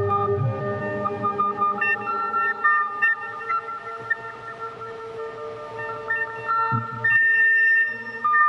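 Electronic modular-synthesizer music: sustained tones layered with short, higher blips. A low hum fades out in the first second, and near the end a single high tone is held while the lower notes drop away.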